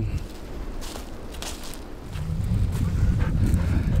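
Wind buffeting the microphone: a low rumble that grows stronger about halfway through, with a few faint crackles.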